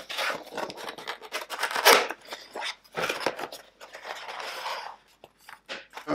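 A white cardboard kit box being handled and opened on a cutting mat: card sliding and scraping against card, in irregular rustles, the loudest about two seconds in.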